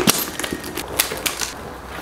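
Sharp clicks and taps, irregularly spaced, from a leather handbag and small items being handled and set down on a rug.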